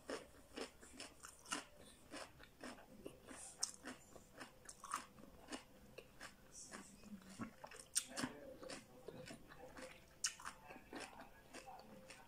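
A person chewing and biting crunchy raw vegetables: soft, irregular crunches and mouth clicks, with a sharper crunch about eight seconds in.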